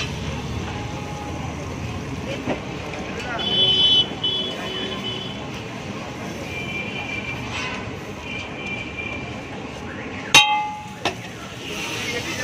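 Busy street traffic noise with vehicle horns: a two-tone horn blast about three and a half seconds in, and a lower horn sounding on and off from about six to nine seconds. Near the end comes a single sharp, ringing clink.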